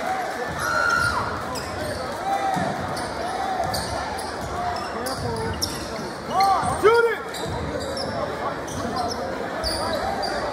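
Basketball dribbling on a hardwood gym floor, with sneakers squeaking in short chirps as players cut and move; the loudest squeaks come about six and seven seconds in. Crowd voices murmur underneath.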